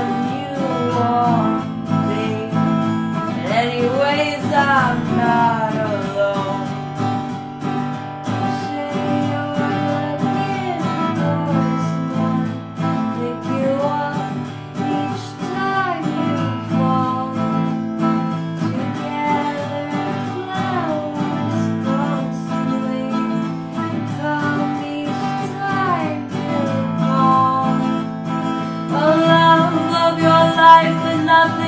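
Small-bodied steel-string acoustic guitar strummed steadily through an instrumental passage of the song, with a voice carrying the melody without words at intervals over it. Fuller singing comes back near the end.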